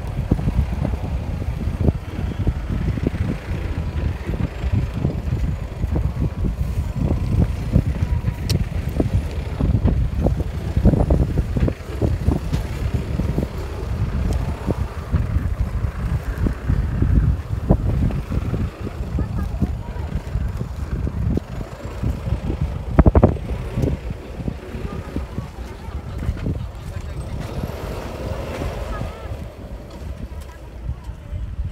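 Wind buffeting a handheld microphone on a walk: a loud, uneven low rumble broken by frequent short knocks, the strongest about 23 seconds in.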